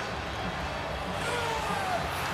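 Hockey arena ambience in a broadcast between commentary lines: a steady, even background rush, with a faint falling tone near the end.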